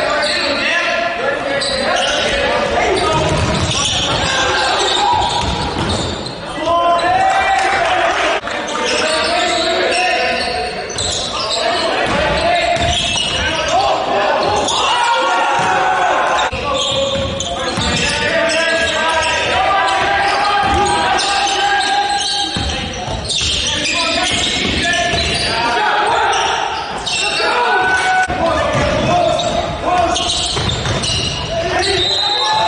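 Basketball game in a gymnasium: the ball bouncing on the hardwood court, with frequent short knocks and indistinct voices calling out, all echoing in the large hall.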